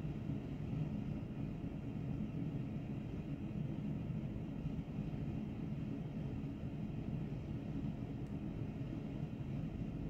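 Steady low rumbling background noise that does not change.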